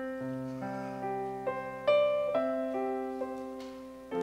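Slow, gentle piano melody: single notes and soft chords struck one after another and left to ring and fade, with a louder chord about two seconds in.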